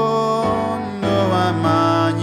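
A man singing a slow gospel song in long, held notes that slide between pitches, over sustained chords and bass notes from a Yamaha Motif XS8 synthesizer keyboard.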